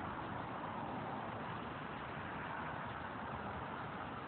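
Steady city street traffic noise, cars driving past on the road.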